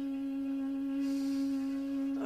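Saluang, the Minangkabau end-blown bamboo flute, holding one long steady note, with a soft breathy hiss about a second in.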